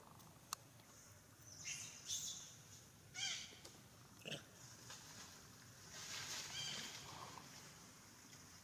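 Macaques giving a series of short, high-pitched squealing calls, with a longer run of calls about six seconds in.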